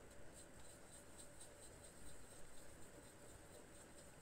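Near silence with faint, rapid soft scratching sounds over a low steady hum.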